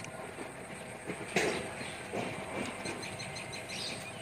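Steady outdoor background noise with one sharp knock about a second and a half in, then a short run of rapid, high chirps.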